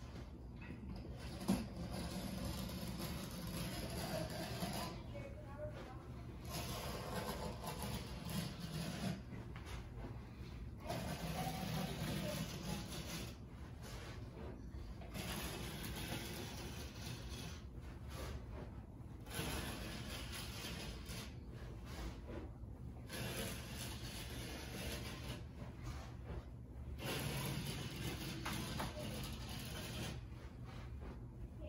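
Excess carpet being cut off along the base of a wall after stretching: a blade drawn through the carpet backing in repeated scratchy cutting strokes, with short pauses between runs.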